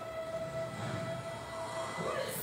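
A steady single-pitched tone, held at one pitch for almost two seconds and stopping just before the end, over a faint low background hum.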